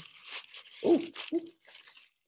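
Clear plastic record sleeve crinkling and rustling as a vinyl LP is worked against it, in irregular scratchy bursts.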